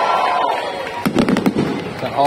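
Fireworks going off: a fading crackle, then a quick cluster of five or six sharp cracks about a second in.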